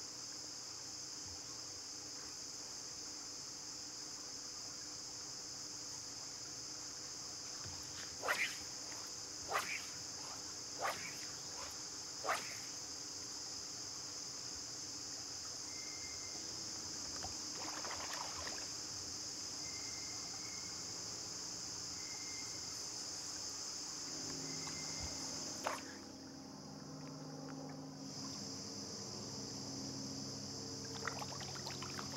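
A steady, high-pitched chorus of insects, broken by a few sharp clicks about a third of the way in; the chorus drops out briefly near the end.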